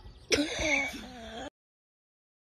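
A person's short, strained, voice-like sound, rough and throaty, that cuts off abruptly about one and a half seconds in.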